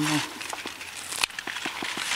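A fresh ear of maize, its kernels at the milk-wax stage, being broken in half by hand: a crackling with one sharp snap a little after a second in, then a few smaller clicks.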